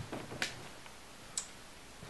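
Three light ticks, about a second apart, in a quiet room.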